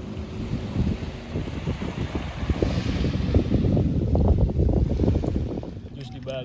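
Wind buffeting the microphone in uneven gusts, over the soft wash of a calm sea. The gusts are heaviest through the middle and ease off near the end.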